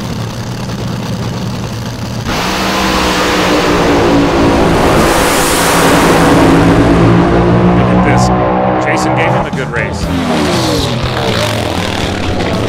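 Two nitro-burning, front-engine Top Fuel dragsters with Hemi V8s, running on the start line, then launching suddenly about two seconds in. The engines stay loud at full throttle down the strip and fall away in pitch and level near the end, with voices over the tail.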